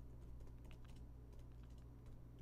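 Faint typing on a laptop keyboard: a quick, uneven run of soft key clicks as a line of text is typed.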